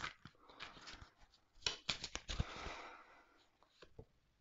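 Faint handling of a deck of oracle cards: a few soft clicks and a short rustle of card stock, bunched about one and a half to three seconds in, with one more click near the end.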